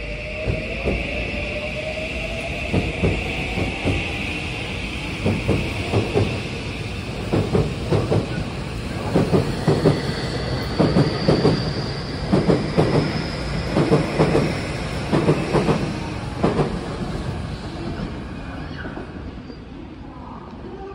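Tokyu 2020 series electric train accelerating away: a rising electric whine from its traction motors, with wheels clacking over rail joints in paired beats as each car passes. The sound fades near the end as the last car clears.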